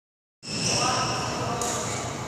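Badminton hall sounds: people's voices mixed with the knocks of play on a wooden court. They start suddenly about half a second in.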